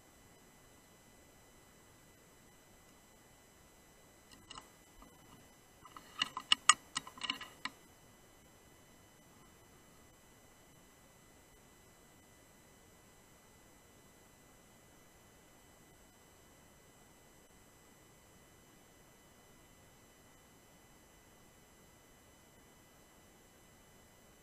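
A quick run of about eight to ten sharp clicks, most of them close together between four and eight seconds in, over an otherwise near-silent background with a faint steady electronic whine.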